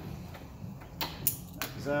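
A couple of sharp clicks and knocks as a folding camp table's top and adjustable leg are unhooked and handled.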